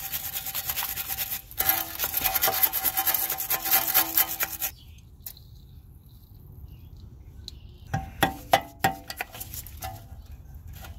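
Steel wire brush scrubbing back and forth rapidly on a rusty steering knuckle and tie rod castle nut for about five seconds. Near the end come a few sharp metal clicks as pliers work at the corroded cotter pin.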